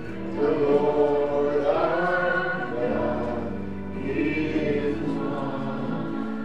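Gospel music: a choir singing over sustained bass notes that change every second or two.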